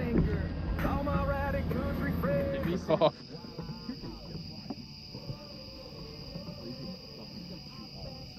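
Indistinct voices over a steady low hum for about three seconds. The sound then drops suddenly to a quieter background, with a steady high whine and faint wavering sounds.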